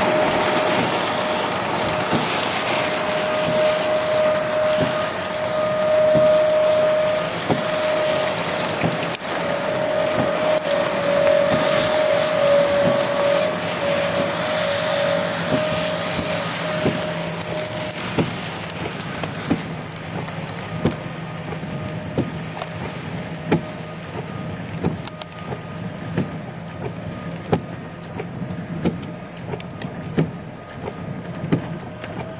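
Rain and wind noise on a vehicle in a thunderstorm, with a steady whine running through the first half or so. In the second half the rush eases and a lower hum sits under sharp separate ticks of raindrops striking the car.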